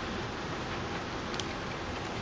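Steady low hiss of background room noise, with one faint tick about one and a half seconds in.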